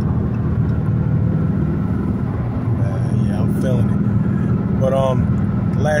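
Dodge Charger's engine and road noise heard from inside the cabin at highway speed: a steady low drone.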